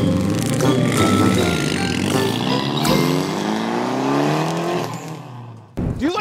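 A car engine revving, its pitch climbing steadily for about two seconds in the middle, over background music; the sound fades out shortly before the end.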